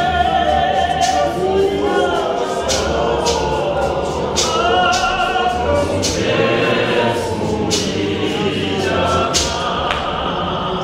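A choir of many voices singing a Zion church hymn, with sharp percussive hits about once a second keeping the beat.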